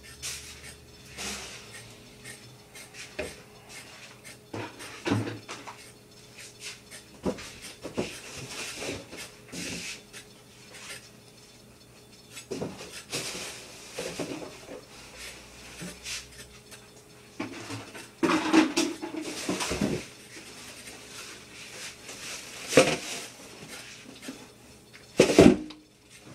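Kitchen prep: a knife scraping carrots, among irregular clicks, knocks and clatter of utensils and dishes, with a few louder knocks in the second half and one near the end.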